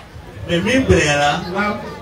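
Speech only: a man talking into a handheld microphone, starting about half a second in after a brief pause.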